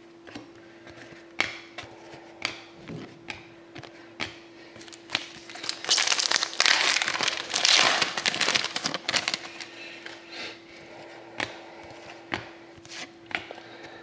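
Light clicks and taps of trading cards being handled, then a foil trading-card pack wrapper torn open and crinkled for about three seconds near the middle.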